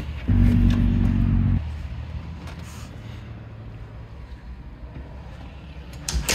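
Motorised keypad deadbolt on a front door whirring for about a second as its motor drives the bolt, starting and stopping abruptly. A fainter low hum follows.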